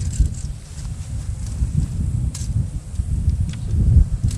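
Wind buffeting the microphone outdoors: a low, uneven rumble with a few faint clicks and rustles.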